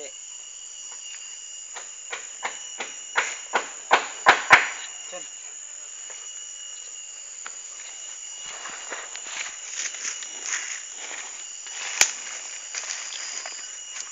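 Steady high buzzing of insects, with a run of sharp clicks about two to five seconds in that get louder and closer together. A stretch of rustling follows, then a single sharp click near the end.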